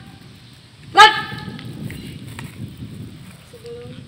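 A girl's loud, short shouted drill command, once, about a second in, followed by a low murmur. A faint steady tone sets in near the end.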